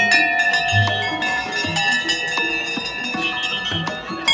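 Hanging brass temple bells struck one after another and left ringing, their steady tones overlapping. One is struck sharply right at the start.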